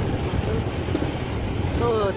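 Steady low rumble of engine and road noise inside a moving bus, with faint music underneath. A voice begins right at the end.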